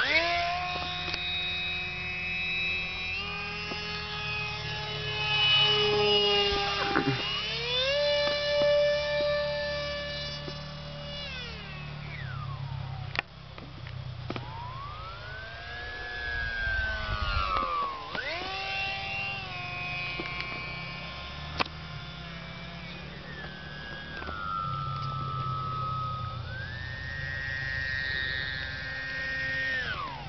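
Electric motor and pusher propeller of a Jamara Roo RC delta plane whining in flight. The pitch steps up and down as the throttle changes and glides down as the plane passes by, then stops near the end as it comes in to land. A low rumble of wind on the microphone runs underneath.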